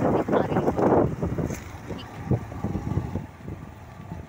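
Riding noise from a 100 cc motorcycle: a loud rush of wind on the microphone with low engine and road rumble beneath it. The rush drops away after about a second as the bike slows.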